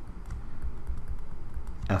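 Stylus writing on a tablet screen: faint, irregular light taps and scrapes as handwriting is drawn, over a low steady hum.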